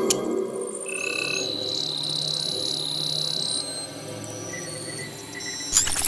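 Electronic TV-channel ident music: sustained high synth tones over softer held low notes, with a short swish near the end.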